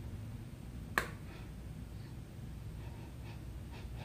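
A single sharp plastic click about a second in as the cap comes off a bottle of shampoo, followed by faint low background hum.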